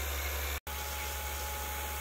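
Harvest Right freeze dryer running under vacuum: a steady low hum with a hiss from its vacuum pump and machinery, briefly cut off about half a second in.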